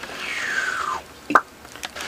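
A man making a whoosh sound effect with his mouth: a hiss that falls in pitch for about a second, followed by a short click.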